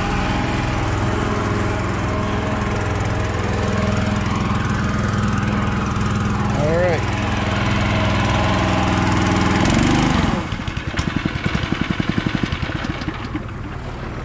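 Small Honda gasoline engine driving a fertilizer transfer pump, running steadily. About ten seconds in its steady note drops away to a quieter, fast, even pulsing beat.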